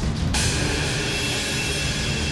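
Dramatic background score: a low rumbling drum bed, joined about a third of a second in by a sudden high hissing swell with a thin whistling tone that holds on.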